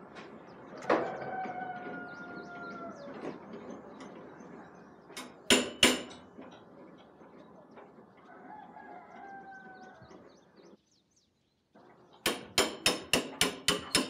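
A rooster crowing twice, each a long call that falls slightly at the end. Two sharp knocks come around the middle, and near the end a quick run of metallic clicks, several a second, from work on an engine hanging from a chain hoist.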